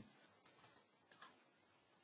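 Near silence with a few faint, short computer clicks, in two small pairs in the first half.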